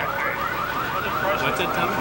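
Car alarms going off, set off by the blast of a nearby explosion: a fast, evenly repeating chirp, several times a second.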